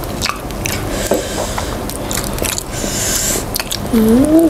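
Close-miked eating of spicy sauced chicken feet by hand: wet chewing and biting with many short clicks and smacks, and two longer hissy stretches near the middle.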